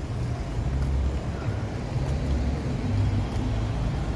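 Street traffic: cars running along a town street, heard as a low, steady engine noise.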